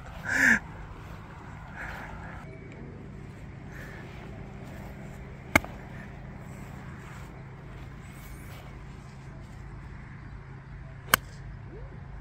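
A golf club striking a ball off the tee: one sharp crack near the end. A similar single click comes about halfway through.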